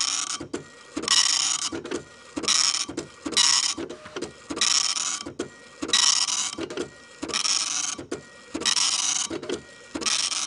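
Printer-style mechanical clatter, a dot-matrix or teleprinter sound effect, chattering in bursts about once a second with faint clicks between them.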